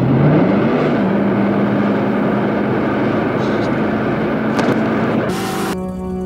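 Car engine in the film soundtrack revving hard as the accelerator is floored. Its pitch climbs over the first second, then holds high and steady under a rushing road and wind noise. Near the end comes a short hiss, then music comes in.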